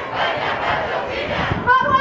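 A crowd of demonstrators cheering and shouting together.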